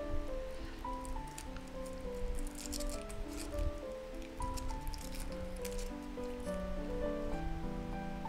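Background music playing a simple melody of held notes, over the crackle of thin foil being peeled off a chocolate egg.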